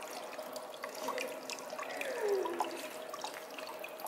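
Small stone courtyard fountain with its water jet splashing and trickling steadily into the basin, with many small drips. A brief falling tone sounds faintly in the background about halfway through.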